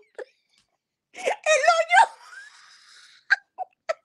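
A woman laughing hard in a high, wavering voice, trailing off into a long breathy wheeze, with a few short gasps near the end.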